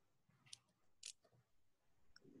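Near silence, with two faint short clicks, about half a second and about a second in.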